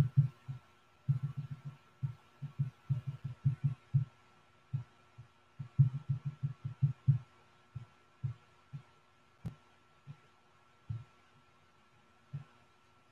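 Irregular low, muffled thumps, some in quick clusters of several a second and thinning out towards the end, over a faint steady high hum.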